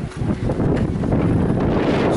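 Wind buffeting the camera's microphone: a steady low rumble that grows a little louder about half a second in.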